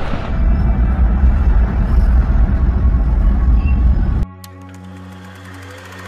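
Deep rumble of a volcanic eruption as an ash cloud billows, cutting off abruptly about four seconds in. A steady, low ambient music drone follows.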